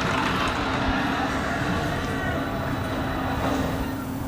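A steady rushing hiss with a faint low hum beneath it, unchanging throughout.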